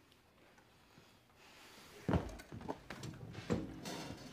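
Soft footsteps and shuffling thumps of a person walking across a room, after more than a second of near silence. A few irregular knocks start about two seconds in.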